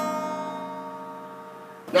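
An acoustic guitar chord ringing out, its notes held and slowly fading.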